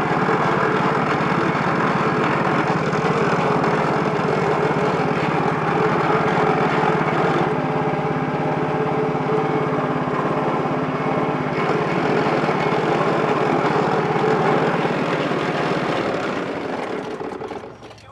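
Motor of a sugarcane juice press running steadily while cane stalks are crushed through its rollers. It dies away and stops near the end.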